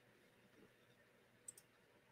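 Near silence: room tone, with two faint quick clicks close together about one and a half seconds in.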